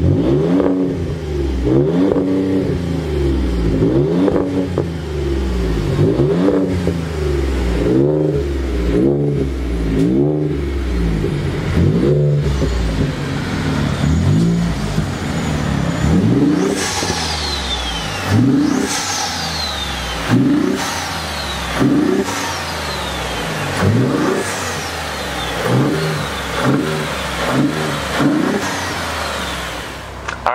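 Twin-turbo 3.5-litre EcoBoost V6 of a 2018 Shelby Raptor Baja pickup being revved. It starts with quick blips of the throttle about once a second. From about halfway on, the blips are spaced about two seconds apart, and each is followed by a high whistle that falls away.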